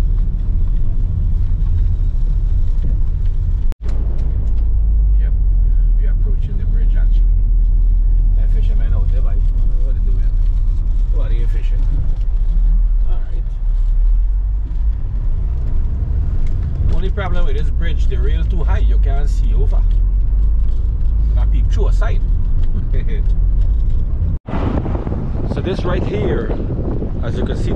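Car driving, heard from inside the cabin: a steady low road and engine rumble. It cuts out for an instant about four seconds in and again near the end.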